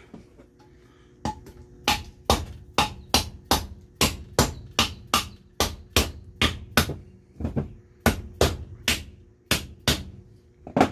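A mallet tapping the steel reservoir case of a TRW power steering pump down onto the pump body: a steady run of sharp taps, about two or three a second, beginning a little over a second in, with a brief pause about three-quarters of the way through. The taps are seating the case until it rests against the pump's flange.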